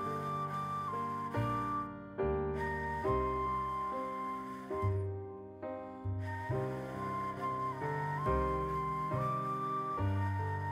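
Soft instrumental background music: a held melody line over low bass notes that change every second or so.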